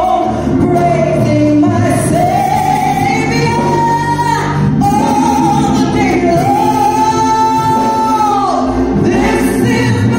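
A woman singing a gospel solo through a handheld microphone, with long held notes; the longest note runs from about five seconds in to past eight seconds. Steady low accompaniment sounds underneath.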